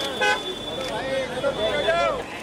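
A short car horn toot about a quarter second in, among people calling out over traffic, with a steady high-pitched tone held through most of it.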